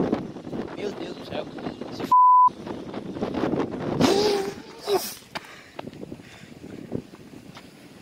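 A censor bleep: a single steady high beep about two seconds in, lasting under half a second, with the other audio cut out while it sounds. Muttered speech and light wind on the microphone run around it.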